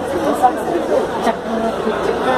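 Chatter of several people talking over one another, with a brief sharp click about half a second in.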